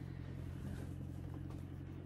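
Tractor engine running steadily, heard as a faint, low, even hum.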